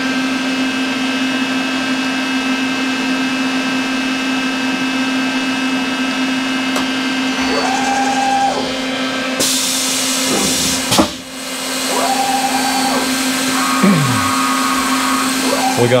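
CNC vertical milling center running: a steady motor hum with a constant whine, joined about halfway through by a hiss, with a clunk and a few brief higher tones in the second half.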